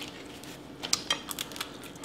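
Eating sounds at the table: a scatter of small clicks and taps as seafood-boil shellfish and food are handled and picked apart on the plate.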